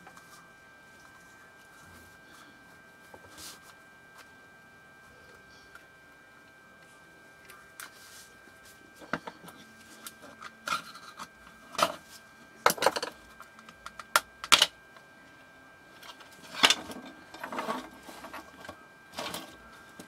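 Plastic clamshell housing of a Blue Point cordless screwdriver being pried apart by hand. After several seconds of quiet handling, a string of sharp clicks and cracks follows as the case halves separate.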